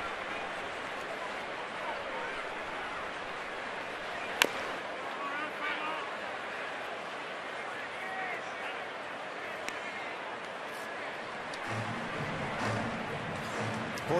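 Baseball stadium crowd ambience: a steady murmur of many voices from the stands, with one sharp crack about four seconds in.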